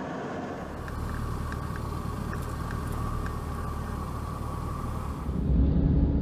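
Steady low rumble of an aircraft in flight heard from inside the cockpit, with a faint steady whine over it. About five seconds in it gives way to a louder, deeper rumble.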